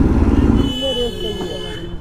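Sport motorcycle engine and wind noise while riding, falling away in level toward the end. About two-thirds of a second in, a steady high-pitched tone comes in along with a short stretch of voice.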